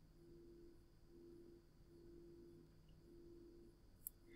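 Near silence: faint room tone with a low, faint hum that comes and goes.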